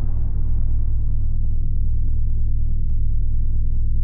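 Cinematic logo-intro sound design: a deep, steady low rumble, with the hiss of an earlier boom dying away and a faint high tone held over it. A single small tick sounds about three seconds in.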